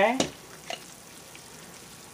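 A couple of light clicks from a plastic roller strip cutter being picked up and handled, over a faint steady hiss.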